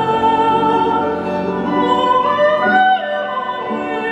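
Soprano singing a classical art song with piano accompaniment, held notes with vibrato and a phrase that climbs in pitch about two and a half seconds in.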